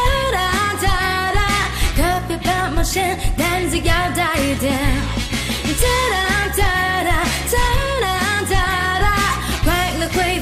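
Chinese pop song: a sung melody over a steady drum beat and bass.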